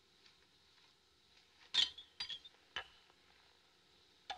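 Light clinks of tableware: a sharp clink with a short ring a little before two seconds in, then two or three lighter clicks over the next second.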